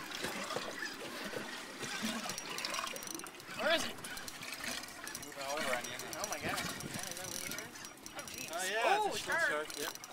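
Water lapping against a small boat's hull, with faint voices now and then.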